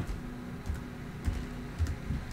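A few soft keystrokes on a computer keyboard, unevenly spaced, over a faint steady hum.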